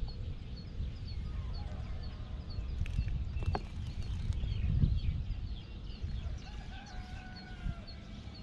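A rooster crowing, with a small bird repeating a short high chirp about three times a second throughout.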